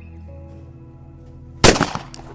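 A single shotgun shot about one and a half seconds in, breaking a going-away chandelle clay target, over steady background music.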